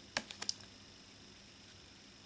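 A tarot card being moved from the front of a hand-held deck to the back: a quick run of light clicks and taps from the card edges near the start.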